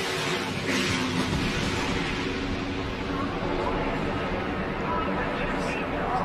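Broadcast track audio of NASCAR race trucks: engines running under a continuous noisy wash of track sound as a wrecked truck slides along on its roof.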